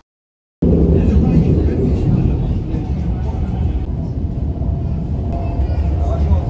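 A commuter train running, a loud steady low rumble heard from inside the carriage, starting abruptly about half a second in.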